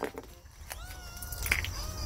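A cat meowing: two drawn-out calls, the first rising then holding, with a few small clicks of conch shell being handled.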